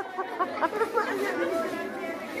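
Many children's voices chattering over one another in a large group, with no single clear speaker.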